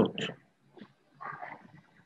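A man's voice says a single word ('dot'), then about a second later a short, faint murmur from the same voice.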